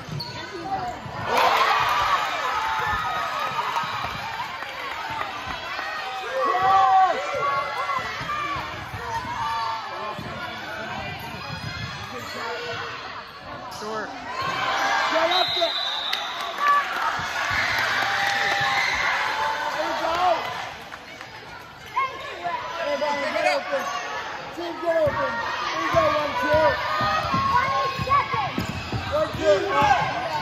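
Basketball dribbling on a hardwood gym court under the steady talk of spectators in the stands.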